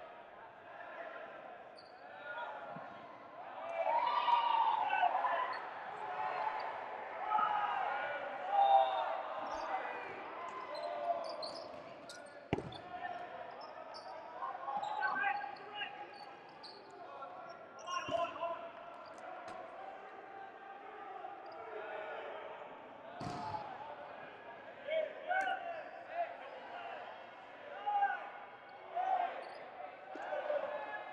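Dodgeballs hitting and bouncing on a hardwood gym floor, with a few sharp impacts about 12, 18 and 23 seconds in. Players and spectators are calling out throughout, echoing in a large gym.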